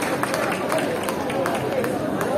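A voice singing over a crowd that claps along in a steady rhythm, about four claps a second, with crowd chatter underneath.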